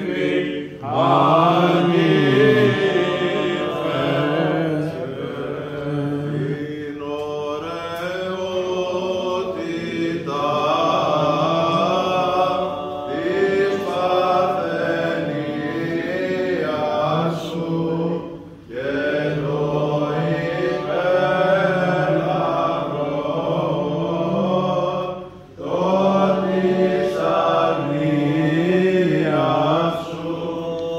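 Greek Orthodox Byzantine chant sung by male voices in a church: a slow, ornamented melody with long held and bending notes. The singing breaks briefly for breath about a second in, and again about 19 and 25 seconds in.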